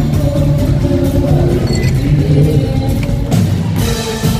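Live band playing loud amplified music with electric guitars and a drum kit, with a sharp drum hit shortly before the end.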